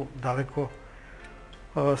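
A man speaking, pausing for about a second in the middle before he carries on talking.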